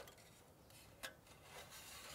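Thin metal panels of a folding titanium tent stove being fitted together: a light click, another about a second later, then a short scrape of metal sliding on metal as a panel goes into place.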